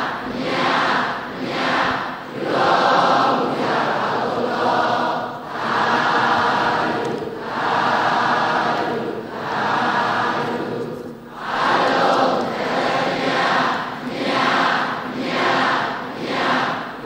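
A Buddhist congregation chanting together in unison, in steady phrases about a second and a half long with short breaks between them.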